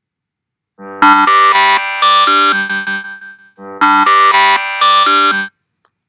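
A countdown timer's end alarm: a ringtone-like melody of quick notes, starting about a second in and played twice.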